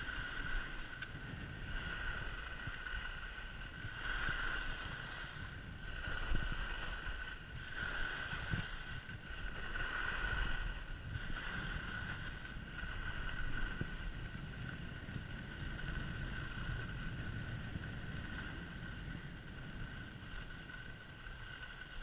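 Wind buffeting the microphone while skis hiss and scrape over groomed snow, the scraping swelling and fading about every two seconds with each turn, then steadier near the end.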